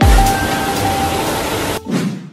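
Waterfall's rushing water, a steady hiss, under music whose beat stops as it begins; the rush cuts off suddenly just before the end.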